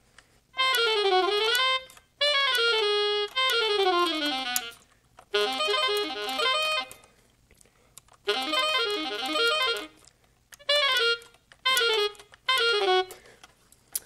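Yamaha YDS-150 digital saxophone on its default electronic sax sound, played in quick scale runs up and down in several short phrases with brief pauses between them. Key responsiveness is at its default 10 out of 20, a setting the player dislikes because it can hang up on a note in fast passages.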